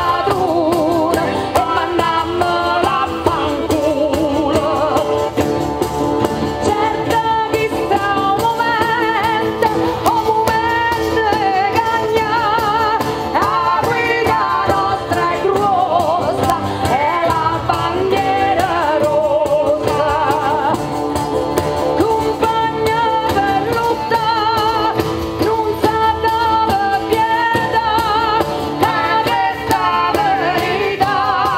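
A woman singing a folk song with a wide vibrato, accompanied by a diatonic button accordion, a lute and a frame drum.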